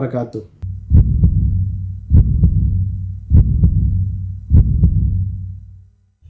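Heartbeat sound effect over a low hum: four deep double thumps, lub-dub, about 1.2 seconds apart, fading out near the end.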